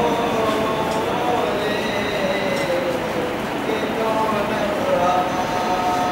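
A teenage boy's voice chanting unaccompanied, drawing out long held notes that slide slowly in pitch, as in a melodic recitation.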